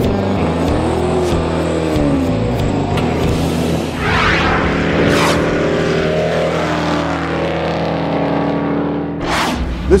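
Car engine revving up and down over music, with three whooshing transition sounds about four, five and nine seconds in.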